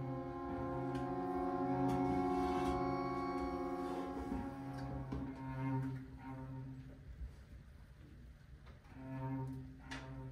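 Chamber string ensemble playing sustained bowed chords with a strong low string line; the sound swells early, fades about seven seconds in, and a new chord enters near the end.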